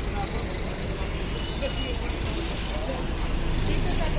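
Steady low rumble of vehicle traffic and idling engines, with indistinct voices in the background.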